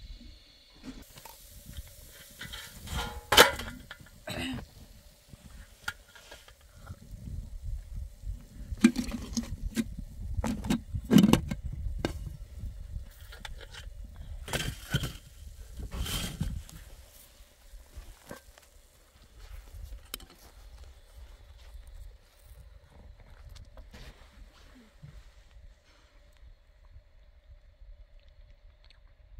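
Occasional knocks and clinks of metal cookware (pots, a tray and a griddle lid) being handled, with a low rumble of wind on the microphone through the middle stretch. It quietens over the last ten seconds.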